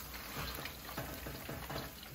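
Hot canola frying oil sizzling with soft, irregular crackles.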